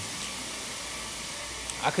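Steady hiss with a low hum underneath, unchanging throughout; a man starts speaking just before the end.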